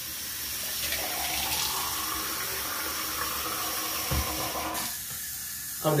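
Bathroom sink tap running lukewarm water into the basin, wetting a paper towel held under it. The flow changes about five seconds in as the tap is turned down.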